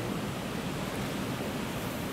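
Steady hiss of room tone and recording noise, with no distinct sounds in it.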